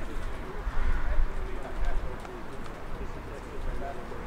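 Players' voices calling across the pitch of an empty stadium, faint and distant, over an uneven low rumble.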